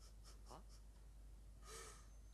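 Near silence: room tone with a few faint, brief soft sounds, the last of them near the end.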